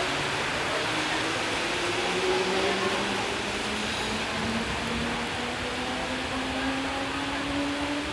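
Nankai electric train pulling out and accelerating away, its motor whine climbing slowly in pitch over the steady rumble of wheels on rail.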